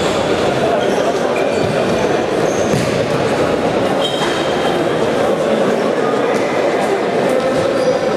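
Steady, echoing din of a sports hall during an indoor futsal game: a dense wash of players' and spectators' voices, with short high squeaks of shoes on the court floor scattered through it.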